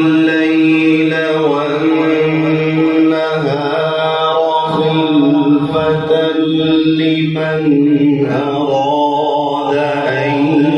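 A man reciting the Quran in the melodic tilawat style, drawing out long held notes that waver and slide in pitch, with short breaks between phrases.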